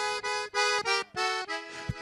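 Accordion playing a quick run of short, detached chords as an instrumental fill between sung lines of a gaúcho song.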